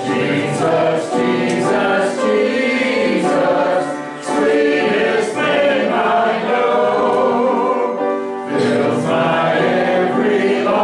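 A church congregation of men's and women's voices singing a hymn together, in sustained phrases with short breaks for breath about four and eight and a half seconds in.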